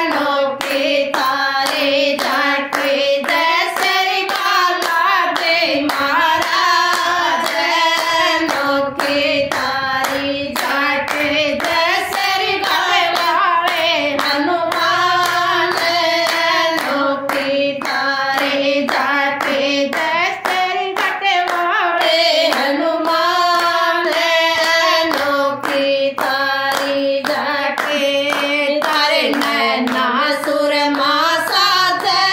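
A group of women singing a Hindu devotional bhajan together, keeping time with steady hand claps.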